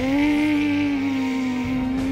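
A boy's voice holding one long buzzing note to imitate a starfighter's engine as he swoops a toy X-wing: the pitch dips, then stays level, and it stops just after the end.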